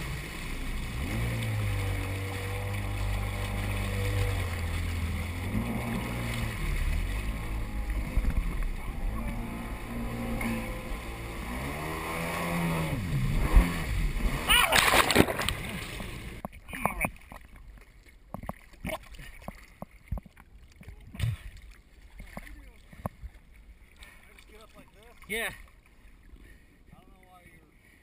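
Yamaha stand-up jet ski engine running at speed over the hiss of spray, its pitch stepping up and down with the throttle and rising around 12 seconds in. About 15 seconds in there is a loud splash as the rider falls off, and the engine stops. After that there is only soft water slapping and sloshing.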